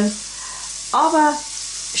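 Butter sizzling steadily in a hot stainless-steel frying pan.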